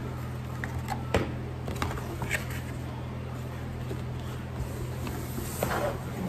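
A cardboard takeout box and foil burger wrapper being handled, with a few light clicks and rustles, over a steady low hum.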